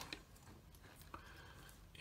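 Near silence: room tone with a few faint, short clicks from hands handling a metal-cased LED driver.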